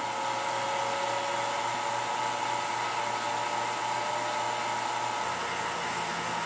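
Vacuum pumps running: a turbomolecular pump spinning up toward its full speed of about 70,000 RPM over a rotary roughing pump, heard as a steady whine with several held tones over a hiss. A low hum comes in near the end.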